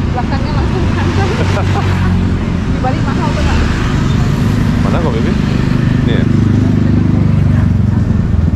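A motor vehicle engine running close by, a steady low hum that grows a little louder in the second half, with people's voices chattering in the background.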